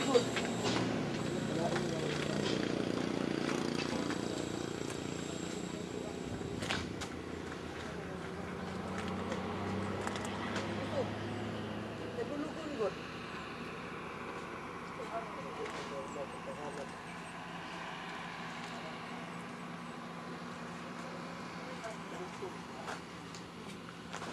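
Faint, indistinct voices over a steady background, with a low hum that fades out about twelve seconds in.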